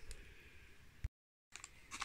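Near silence: faint room tone with a single short click about a second in, followed by a brief gap of total silence.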